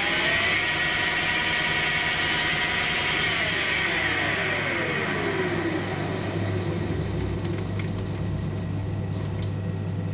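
Three-phase induction motor on an old variable frequency drive spinning a lathe spindle through a positioning move: its whine rises as it speeds up, holds steady, then falls over about two seconds as the drive slows it, over a steady low hum.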